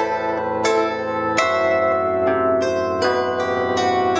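Bandura played solo: a run of plucked notes and chords ringing out over lower bass strings, with a strong chord about one and a half seconds in.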